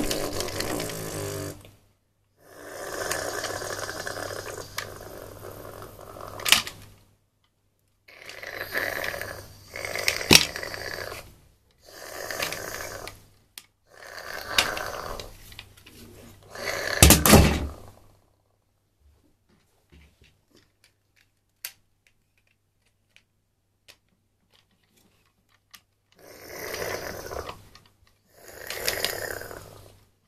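A person making loud, noisy breathing or snoring sounds close to the microphone, in about eight bursts of one to four seconds each. A quiet stretch of several seconds with only faint clicks comes after the middle.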